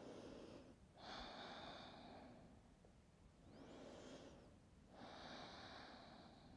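Faint, slow breathing. There are two full breaths, each a short in-breath followed by a longer out-breath, with brief pauses between.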